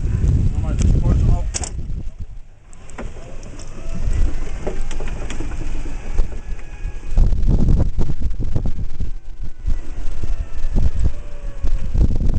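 Wind buffeting the microphone of a camera on a moving golf cart: uneven low rumble with scattered knocks and rattles from the ride, easing briefly about two seconds in.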